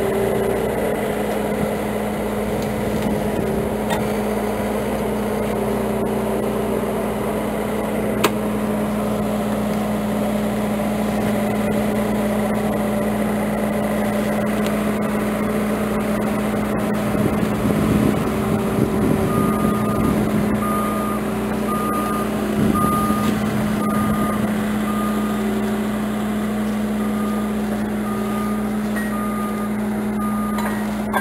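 An engine runs steadily throughout. From about twenty seconds in, a vehicle's reversing alarm beeps evenly, a little more than once a second. Some brief rustling comes near the middle.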